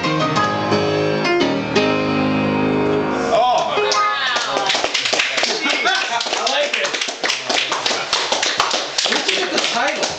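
Upright piano playing the last bars of a ragtime piece, closing on a held chord about three seconds in. Then a small group applauding, with voices calling out over the clapping.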